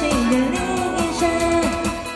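A woman sings a pop song live into a microphone over an amplified backing track with guitar and a steady beat, heard through the stage PA.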